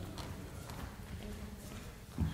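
A person's footsteps on a wooden stage floor, faint, about two steps a second.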